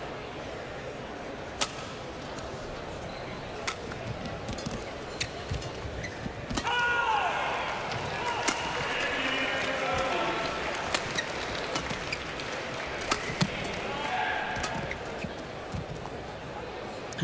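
Badminton rally: sharp racket strikes on the shuttlecock every one to two seconds, over a steady murmur of arena crowd voices. There is a brief falling squeak about seven seconds in.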